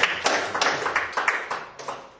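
Small audience applauding with separate, distinct handclaps that thin out and die away near the end.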